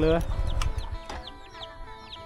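Chicks peeping: a quick string of short, high, downward-sliding peeps, about four a second.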